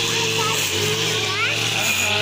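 Small petrol engine of a string trimmer running steadily at mowing speed, with children's high voices over it and a rising squeal a little past the middle.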